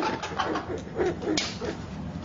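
A person's short, low-pitched wordless vocal sounds, repeated several times, with a brief sharp click a little past halfway.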